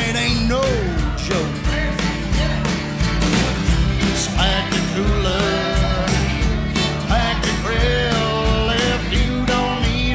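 Country/Americana band music: acoustic guitar, bass and a steady beat, with a lead melody of sliding, bending notes over it.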